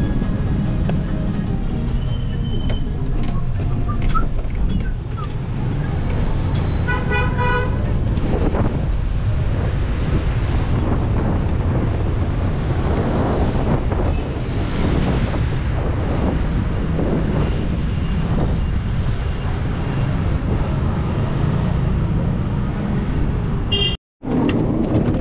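A minibus (combi) driving slowly, its engine and road noise coming in through the open side door. About seven seconds in, a vehicle horn gives a quick run of short toots.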